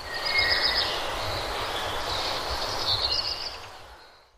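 Preview of a stock ambience recording of morning birdsong: birds chirping over a steady outdoor background noise, fading out near the end.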